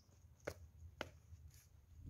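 Near silence over a low steady rumble, broken by two faint sharp clicks about half a second apart.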